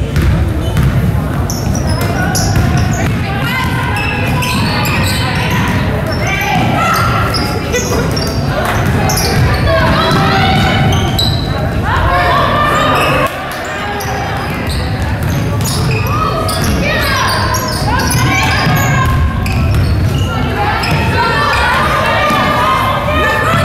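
A basketball dribbling on a hardwood gym floor during live play, with players and coaches calling out, in a large gym.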